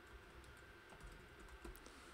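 Faint, quick keystrokes on a computer keyboard as a line of code is typed.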